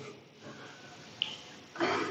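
A pause in a man's speech: faint room noise, a brief high click about a second in, then an audible intake of breath near the end as he gets ready to speak again.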